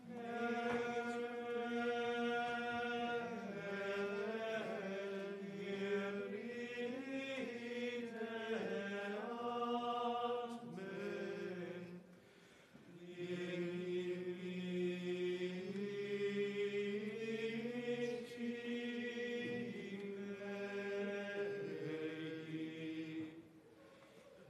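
Latin plainchant sung in long, sustained phrases, with a brief pause for breath about halfway through and another near the end.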